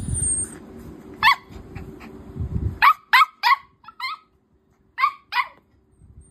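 Puppy barking in short, high-pitched yaps, about seven in all, one early and the rest in a quick string through the second half. Low rubbing noise runs under the first half and stops just before the string of barks.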